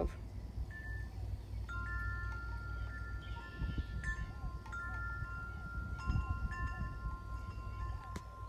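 Wind chimes ringing: several long, clear tones at different pitches, struck now and then and left to ring, over a steady low rumble.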